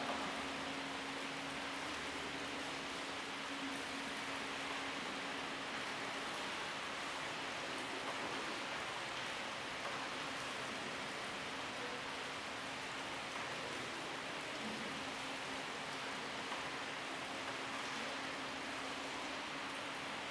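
Steady even hiss of room noise with a faint low hum running under it, unchanging throughout.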